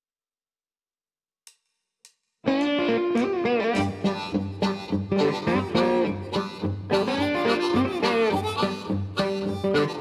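Two faint clicks, then a blues band starts abruptly about two and a half seconds in: a blues harmonica plays bending lead lines over guitars.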